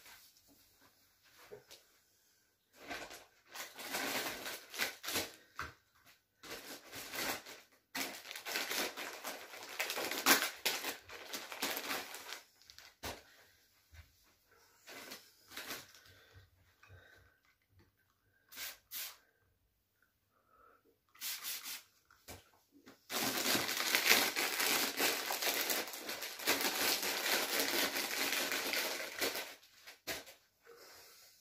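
Wipes rubbing over plastic-wrapped groceries and packaging crinkling as shopping is wiped down by gloved hands. It comes in irregular bursts, with a longer stretch of steady rubbing and rustling in the last several seconds.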